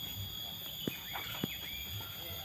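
Two short knocks about half a second apart, likely from the mahogany log being shifted by hand, over faint voices and a steady high whine.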